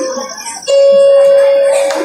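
Background music with sustained notes; a loud long note is held from a little under a second in and cuts off abruptly at the end.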